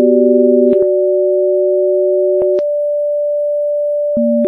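Electronic pure sine tones sounding together as a steady chord. The lowest tone drops out under a second in and the middle one at about two and a half seconds, leaving one mid-pitched tone held alone. Each switch carries a faint click.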